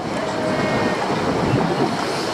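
A boat's motor running, with water rushing along the hull: a loud, steady rumble.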